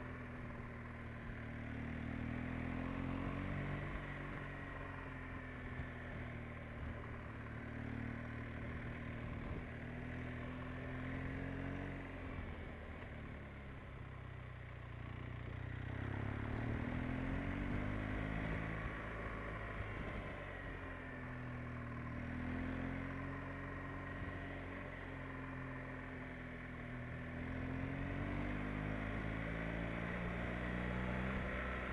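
Motorcycle engine running under way, its pitch rising and falling as the throttle opens and closes. About halfway through it drops lower and quieter for a few seconds, then pulls up again.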